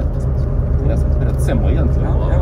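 Steady low rumble of a rail-replacement bus's engine and running gear heard from inside the cabin while it drives, with people talking in the background.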